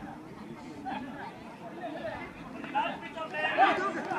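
Crowd of spectators chattering, many voices overlapping, growing louder about three seconds in.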